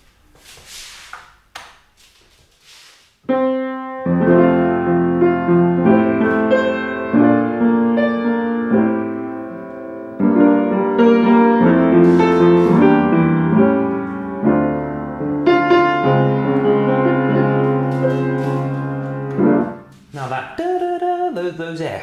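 A 1989 Yamaha U30 upright piano with a Disklavier system playing back a recorded performance by itself, its keys and hammers driven by solenoids: a melody over chords that starts about three seconds in and stops a couple of seconds before the end. A few notes, the Fs, come out too loud because they were played too heavily in the recording.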